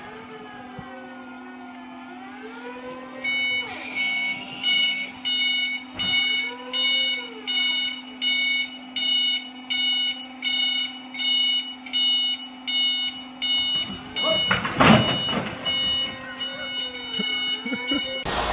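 Electric forklift's warning beeper sounding a high double tone about once every 0.8 s over a steady low hum. A loud, rough burst of noise comes about fifteen seconds in.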